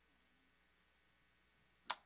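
Faint room tone, broken near the end by a single sharp click.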